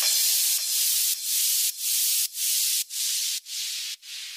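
A high hissing noise effect from an electronic dance remix, chopped into even pulses about twice a second and fading out as the track ends, with no drums or bass left under it.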